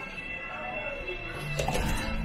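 Restaurant background din in the entryway: faint music and voices with a steady hum, and a short burst of noise near the end.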